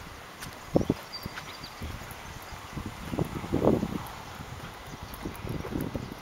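Footsteps of a person walking over grass: irregular low thuds and scuffs, heaviest about a second in and again past the middle.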